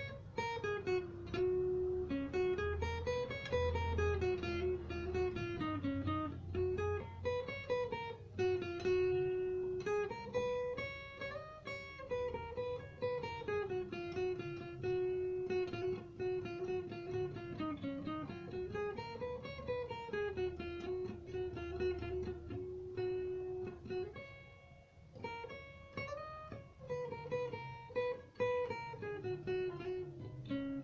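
Acoustic guitar playing the G scale in single picked notes, running up and down several times, with a brief lull near the end.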